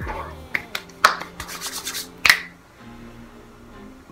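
Close handling noises from hands moving at the face and head: a few sharp clicks and about a second of rapid rubbing and clicking, over soft background music.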